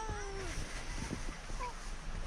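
A small dog whining: one long, high, slightly falling whine that fades out about half a second in, followed by a few faint short squeaks.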